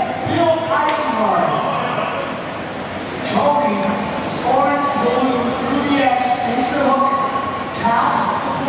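Electric 1/10-scale radio-control racing cars running laps on an indoor carpet track, their motors whining and gliding in pitch as they accelerate, brake and pass, with an indistinct voice echoing in the hall.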